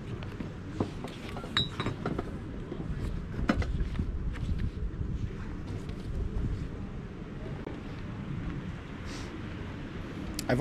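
Open-air background rumble with a few light clicks and clinks of small items being handled on a cluttered sale table, the sharpest ones between about one and a half and four seconds in.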